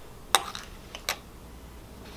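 Metal spoon clinking against a glass bowl: two short, light clinks about three-quarters of a second apart.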